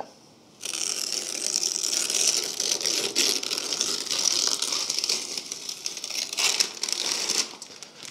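Masking tape being peeled off freshly painted motorcycle bodywork: a steady crackling rip that starts about half a second in and trails off near the end.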